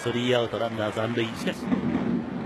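A man's voice talking for about the first second and a half, then a steady murmur of stadium crowd noise.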